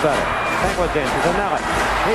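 A man's hockey play-by-play commentary calling the action, over steady background noise and a low hum.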